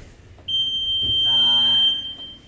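Electronic round-timer buzzer sounding one long, steady, high-pitched tone about half a second in, lasting about a second and a half, as the countdown reaches zero and the sparring round ends. A voice calls out over the buzzer partway through.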